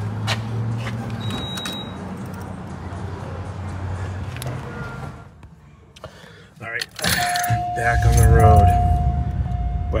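A steady low hum for the first few seconds, a couple of clicks about six and a half seconds in, then a car's dashboard warning chime from about seven seconds in: one steady tone, held with a short break.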